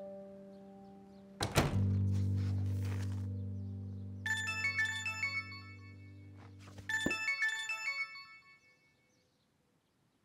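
A thump about a second and a half in, followed by a low held music drone. A mobile phone ringtone plays a quick run of bright notes twice, about four and seven seconds in, then stops.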